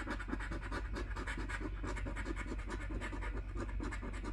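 A coin scratching the coating off a paper lottery scratch-off ticket in rapid back-and-forth strokes.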